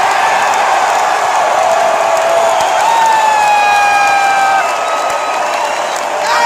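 Large ballpark crowd cheering and applauding a home run, with a long held whoop from about three seconds in to about four and a half seconds in.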